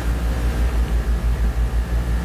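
A low, fluctuating rumble with a faint hiss over it.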